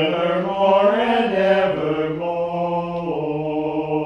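Mixed church choir singing a sustained phrase in parts, the chord shifting about a second in and again about two seconds in, then held.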